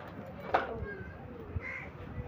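A crow cawing a few times, with two sharp snaps from a knife cutting green beans.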